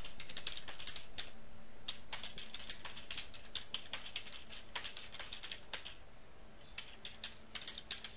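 Typing on a computer keyboard: irregular runs of key clicks with a short pause about six seconds in, over a faint steady hum.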